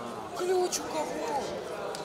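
Several people talking and calling out over one another in a large sports hall, the words indistinct. A brief sharp click comes about three quarters of a second in.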